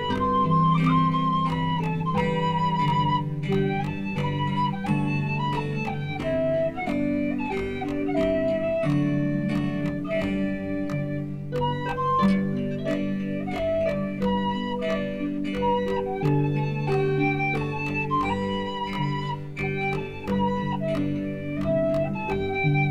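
Celtic folk instrumental: a whistle plays an ornamented melody over strummed guitar chords and sustained low chords.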